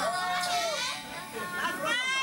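Excited voices calling out in a hall, with one loud rising shout near the end.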